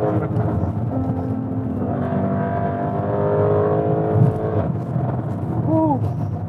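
The Lamborghini Urus's twin-turbo 4.0-litre V8, fitted with aftermarket downpipes, is heard from inside the cabin while driving at speed. Its engine note drones steadily over road rumble and rises slowly in pitch through the middle, as the car pulls harder.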